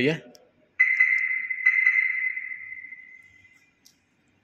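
Two high electronic beeps, a little under a second apart, from the Maruti Ertiga's remote central-locking system confirming a key-fob button press. The beeps ring out and fade over about two seconds in the echoing garage.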